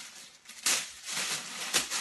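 Tissue paper rustling and crackling as it is pulled out of a box by hand, with two louder crackles, one about two-thirds of a second in and one near the end.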